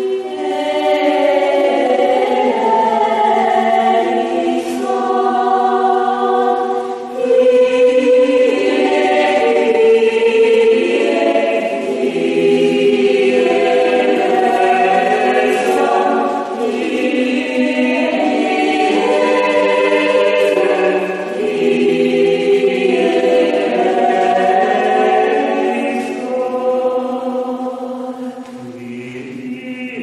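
A small mixed polyphonic choir singing a cappella in slow phrases of long-held chords, softening into a quieter, lower passage near the end.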